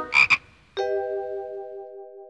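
Cartoon frog croaking twice in quick succession, followed by a single held musical note that slowly fades.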